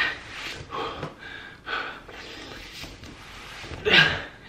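A man breathing hard in short, noisy breaths while pulling layered T-shirts off over his head, the cotton fabric rustling in between; the loudest breath comes at the very end.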